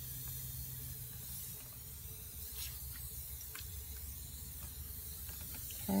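Edsyn 1072 hot air rework station blowing a steady hiss of air through a fan tip onto a circuit board to reflow solder, over a low hum, with a few faint clicks.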